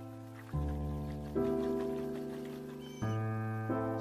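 Background music: sustained chords, a new chord struck several times, each fading slowly.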